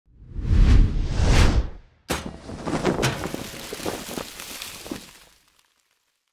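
Logo-reveal sound effect: a deep whooshing swell that surges twice, a sudden impact about two seconds in, then a decaying tail with a few smaller hits that fades out near the end.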